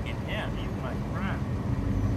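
Cats giving three short, faint meows, each rising and falling in pitch, over a steady low rumble of traffic.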